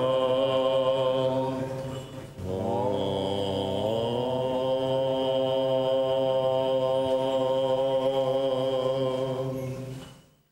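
Orthodox Byzantine liturgical chant sung in long, drawn-out held notes. The singing dips briefly about two seconds in, then slides up into a new note that is held until it fades out near the end.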